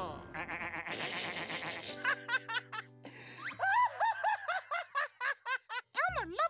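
A puppet character's cartoonish laughter in quick rising-and-falling syllables over held music chords, following a burst of noisy crash about a second in.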